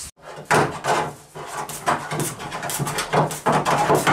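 Irregular scraping, rubbing and light knocks as trim is worked by hand onto the cut sheet-metal edge of a car body to make a safety edge.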